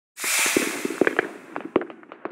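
Intro sound effect: a burst of hiss swells in and fades away, scattered with irregular sharp cracks and pops, like distant firecrackers.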